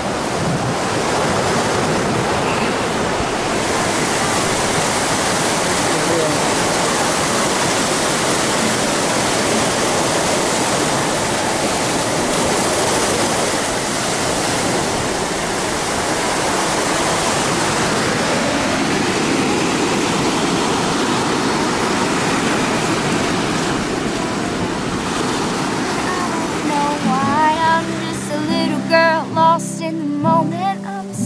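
Ocean surf breaking and washing up a sand beach, a steady rushing wash of waves. Music comes in near the end.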